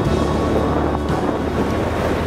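Motorboat running at speed on a Yanmar 4LH inboard diesel: wind buffets the microphone over the rush of the wake and a low, steady engine drone. The mechanic suspects the engine is held back by a badly worn turbo that keeps it from reaching its proper rpm.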